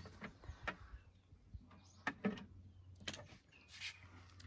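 Scattered light knocks, clicks and a brief scrape from the wooden Flow Hive roof and its hardware being handled as the last roof screw goes in, over a faint steady low hum.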